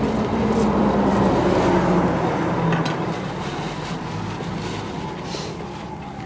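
A passing motor vehicle's engine hum, growing loudest about a second or two in and then slowly fading away.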